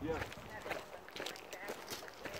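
Hikers' voices talking faintly, with footsteps on a dry, gravelly trail.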